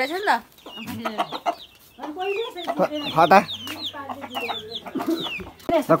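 Domestic chickens, a rooster among them, clucking in a quick series of short calls, several sliding down in pitch.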